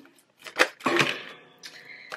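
Tarot cards being pulled from the deck and laid down on a table: a few light slaps and clicks about half a second and a second in.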